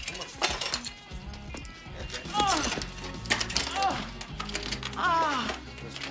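Background music with a stepping bass line, with loud shouts rising and falling in pitch over it about two, three and a half and five seconds in, and a few sharp knocks.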